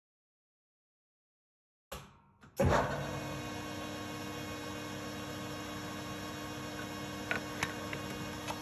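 Toolmaster metal lathe started up after silence about two and a half seconds in, its spindle and gear train then running steadily at 635 rpm with a constant hum and whine. A couple of faint clicks come near the end.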